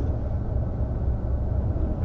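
Steady low rumble of room background noise in a lecture hall, with no speech.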